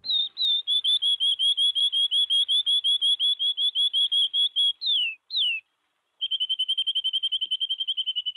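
A canary singing: a long trill of rapid, evenly repeated chirps, then two downward-sliding notes about five seconds in, a short pause, and a faster trill. The song is auto-panned from left to right as it grows louder.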